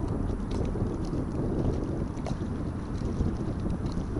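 Wind buffeting the microphone: a steady, gusting low rumble, with a few faint light ticks scattered through it.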